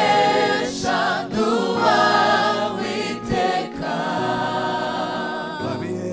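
Gospel choir singing in Kinyarwanda, several voices together in short phrases, with wavering sustained notes.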